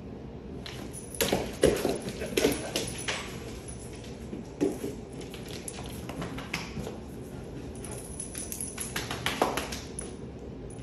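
Scattered taps and thumps of a dog playing keep-away with a toy on a dog bed: a busy cluster about a second in, a single knock near the middle and another flurry near the end.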